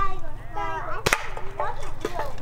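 A single sharp crack of a small rifle shot about a second in, amid children's voices.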